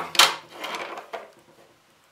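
A loud sharp click with a brief rustle, then a few softer handling knocks, as a homemade bench power supply is switched on and handled.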